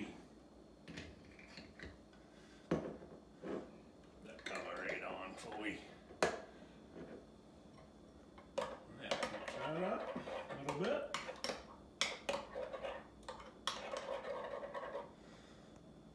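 Metal spoon stirring melted garlic butter in a glass bowl: repeated sharp clinks and scraping of the spoon against the glass, busiest in the second half.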